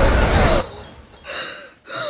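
A loud, low sound-design swell cuts off about half a second in. It is followed by a woman's two short, sharp gasps as she starts awake in bed.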